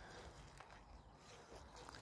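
Near silence: faint outdoor background hiss during a pause in speech.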